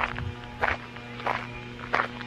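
Footsteps on a paved path, about three steps every two seconds, with a steady hum underneath.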